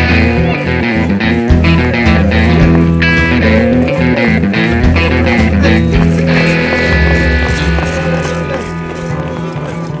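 Background music with guitar, getting somewhat quieter over the last few seconds.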